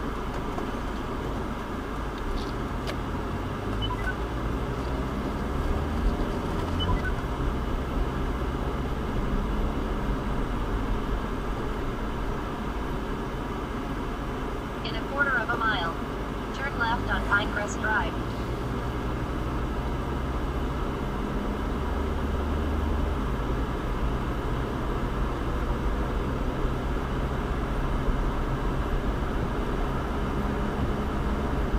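Car cabin road noise: a steady low engine and tyre rumble as the car pulls away from a near stop and speeds up to about 30 mph. A brief voice comes in about halfway through.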